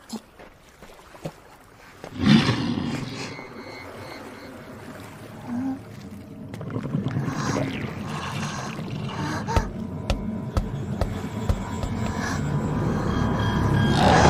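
Suspense film soundtrack: a sudden loud sting about two seconds in, then a low, rumbling drone that swells steadily louder, with a run of low thuds about two a second near the middle.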